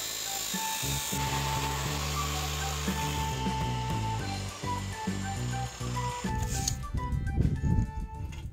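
Keyang abrasive cut-off saw cutting through a square steel pipe: a steady grinding hiss that ends about six seconds in, followed by a few clattering knocks. Background music with a melody and bass runs throughout.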